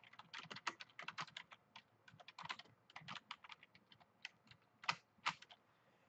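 Computer keyboard being typed on: a faint, irregular run of key clicks as a short phrase is typed, stopping shortly before the end.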